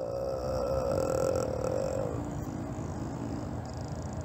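A man's drawn-out hesitant "uhh" trails off quietly, then turns into a lower, faint hum from about halfway through.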